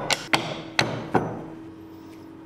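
Hardwood strips being set down in pipe clamps and knocked against one another: four sharp wooden knocks in the first second or so, then only a faint steady hum.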